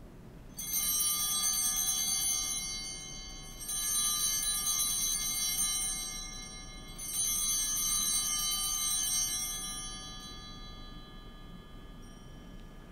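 Altar bells rung three times at the elevation of the consecrated host, each ring a bright shimmer of high tones lasting about three seconds before fading.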